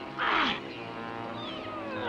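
Cartoon soundtrack: a short sound effect with a falling pitch about a quarter-second in, over held background music notes.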